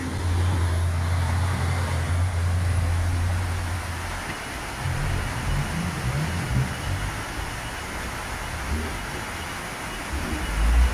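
Diesel engine of a three-axle MAN tipper truck running at low speed: a steady low drone for about the first four seconds, then a more uneven rumble.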